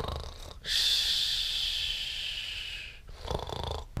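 A man snoring: one long, hissing breath starting about half a second in and fading away over about two seconds.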